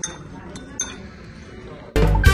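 Tableware clinking against a glass tabletop: three sharp, ringing clinks in the first second.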